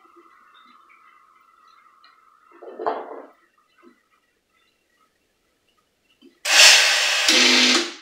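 Steam wand of an old Tria Baby / Saeco Baby espresso machine being purged: a loud hiss of steam for about a second and a half near the end. Earlier comes a faint steady high tone, then a brief rustle about three seconds in as the wand is wiped with a cloth.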